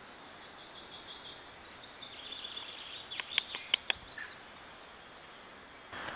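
Small birds chirping and twittering in woodland, with a quick run of four or five sharp clicks about three seconds in.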